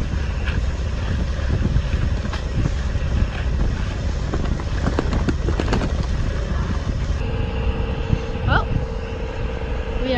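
Mercury outboard motor running steadily as the boat motors along, under heavy wind buffeting on the microphone. About seven seconds in, the sound changes abruptly to a steadier hum with a thin held tone, and a short rising whistle follows.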